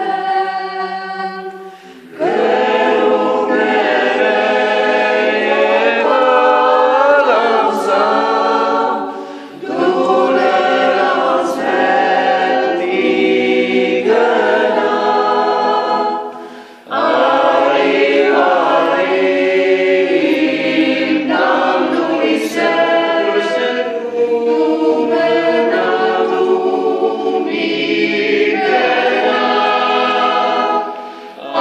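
A mixed choir of men and women singing a cappella, in long held phrases broken by short pauses for breath about two, nine and a half and seventeen seconds in.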